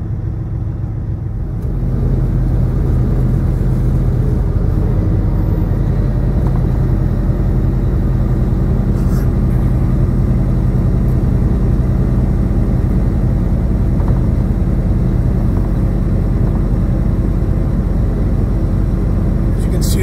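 Peterbilt 579 semi truck's diesel engine running steadily with tyre and road noise, heard inside the cab. The drone steps up in loudness about two seconds in and then holds steady.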